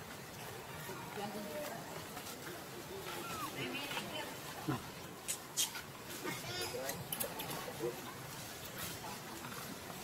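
Faint, indistinct background voices, with a few short high-pitched calls and a handful of sharp clicks around the middle.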